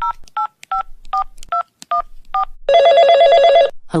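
Touch-tone phone keypad dialing seven digits, short two-note beeps about two and a half per second, followed by one burst of telephone ringing about a second long as the call goes through.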